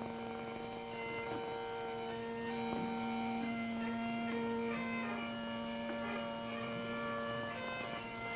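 Bagpipes playing: a steady drone held throughout, with a chanter melody moving above it.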